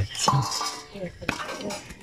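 A knife chopping raw meat on a wooden block, with a few sharp knocks spaced through the moment.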